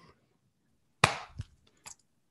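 A single sharp snap or knock about a second in that dies away quickly, followed by a couple of faint clicks near the end; otherwise near silence.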